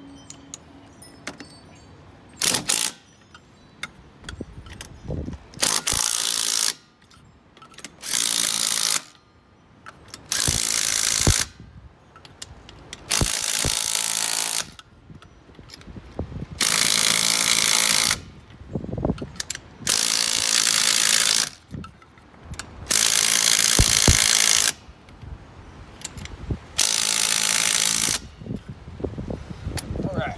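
Cordless impact driver running lug nuts onto a golf-cart wheel in short bursts of one to two seconds each, about nine in all, with small metal clicks in the pauses between.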